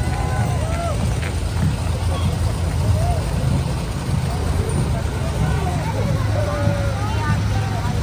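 Scattered voices and chatter of a crowd, none of it close or clear, over a steady low rumble of wind on the microphone.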